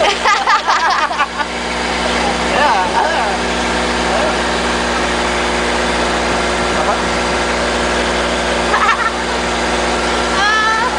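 A riverboat's engine running with a steady, even drone. Laughter and voices rise over it in the first second or so and again briefly near the end.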